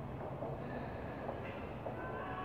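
Steady low rumble of a subway train, heard from an underground platform.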